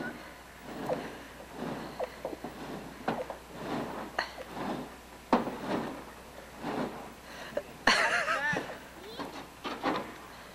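Scattered light knocks and scrapes with faint, distant voices; a voice calls out or laughs about eight seconds in.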